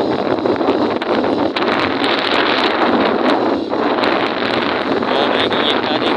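Steady, loud wind rushing over the microphone while moving along a road at riding speed, with vehicle and road noise underneath.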